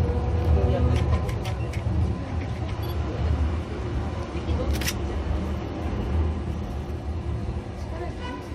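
Interior running noise of a Toden Arakawa Line 7000-series tram under way, heard from the front of the car: a steady low rumble from the motors and wheels. There are a few light clicks about a second in and one sharper click near five seconds.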